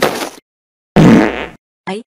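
Three short, harsh, rasping sound-effect bursts: a first at the start, the loudest about a second in lasting about half a second, and a brief one at the very end.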